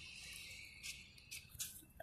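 Quiet inside a waiting car: a faint steady high-pitched drone under a low rumble, with a few soft rustles or clicks about a second in and again near the end.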